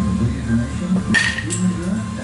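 A metal baseball bat strikes a pitched ball once about a second in, a sharp ringing ping, followed shortly by a fainter click. Music and talk from a radio play underneath.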